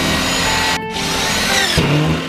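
Ridgid cordless drill driving a screw through drywall into a stud. The motor runs in two stretches, with a brief break a little under a second in.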